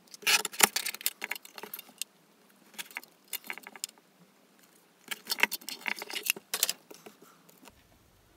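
Guillotine paper trimmer cutting a strip of black card: clusters of sharp clicks and rattles from the arm and blade with paper rustling, in two main bouts about five seconds apart and a shorter bout between them.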